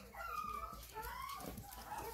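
Chihuahua puppies making several short, high squeaks and yips.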